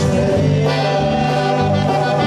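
Diatonic button accordion playing sustained, chord-rich conjunto music with the band, its held reed notes changing chord about half a second in.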